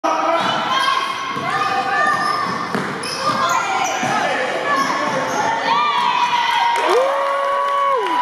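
A basketball being dribbled on a hardwood gym floor during a youth game, with overlapping shouts from children and spectators echoing in the hall. Near the end there are long, drawn-out calls.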